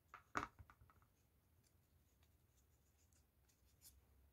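Quiet handling noise of hands working foamiran foam petals and a hot glue gun: a short cluster of light taps and rustles about half a second in, then a few faint ticks over room tone.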